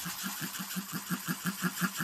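The broken end of a wooden disposable chopstick rubbed quickly back and forth on sandpaper, a rhythmic scratching at about seven strokes a second, sanding off the splintered burrs.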